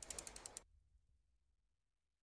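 A quick run of faint clicks, about a dozen a second, dying away within the first half second, then near silence: the tail of the channel's logo-reveal sound effect.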